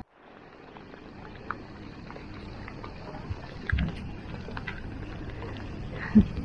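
Steady outdoor background noise, a low rumble with hiss, fading in just after the start, with a few faint clicks and a dull thump a little after halfway.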